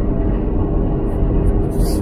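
Steady cabin noise of a 2007 Toyota 4Runner V8 cruising at highway speed: an even low road rumble with a steady hum running through it.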